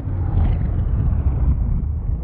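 Sound-design rumble of an animated logo sting: a steady deep rumble with a fainter hiss above it that thins out over the two seconds.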